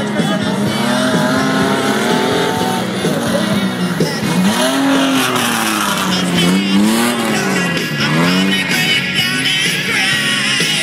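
Race pickup truck's engine revving hard, its pitch rising and falling again and again as the truck slides around a snow-packed turn.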